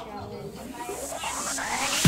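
A rising whoosh of noise that sweeps upward in pitch and grows steadily louder: the build-up riser of an electronic dance music track.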